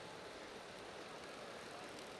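Faint, steady background noise of an indoor velodrome arena, with no distinct sounds standing out.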